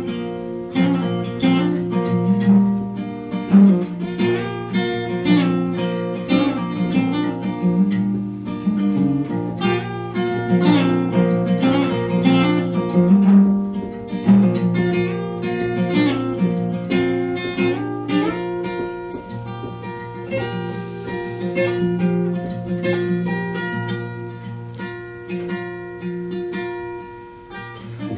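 Solo acoustic guitar playing a song's instrumental introduction, ringing notes and chords over sustained low bass notes, with no singing.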